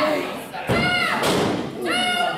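Referee's hand slapping the canvas ring mat during a pin count: two slaps about a second apart, each followed by a short shout.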